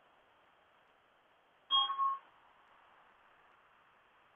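A short two-part electronic chime, about half a second long, a little under two seconds in, over a faint steady hiss.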